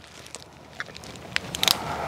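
A dog crunching food off pavement: a few short, scattered crunches and clicks, with a soft hiss rising from about halfway through.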